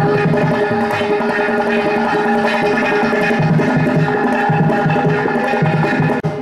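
Carnatic ensemble music: ghatam and mridangam strokes over one steady held note, the percussion growing denser and more rhythmic from about halfway.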